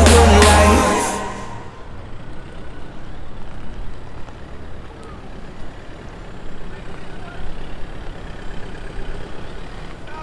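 Music fades out in the first second or so. Then a Ford Ranger pickup's engine runs low and steady as it tows a boat on its trailer.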